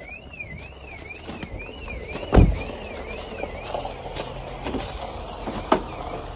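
A heavy dull thump about two and a half seconds in and a sharp click near the end as a motorhome's bonnet is released and lifted open. Behind it runs a faint warbling tone that rises and falls about twice a second.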